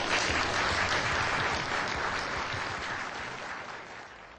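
Audience applauding, a dense patter of many hands clapping that slowly dies away toward the end.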